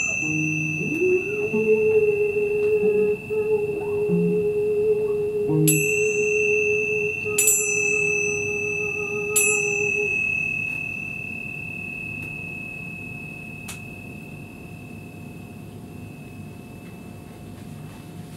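Improvised music: a small high-pitched bell struck about five times, each strike ringing on for many seconds, over a steady held mid-pitched tone that stops about ten seconds in. After that the ringing fades slowly away.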